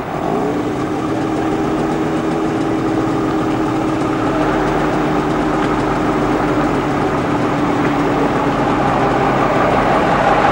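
Diesel engine of an ERF three-axle lorry tractor unit running as the lorry pulls slowly away, its steady note growing gradually louder as it comes closer.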